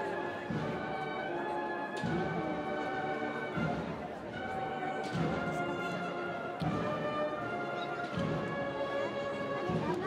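Cornet and drum band playing a processional march: cornets holding sustained melody notes over the drums, with a heavy drum beat about every second and a half.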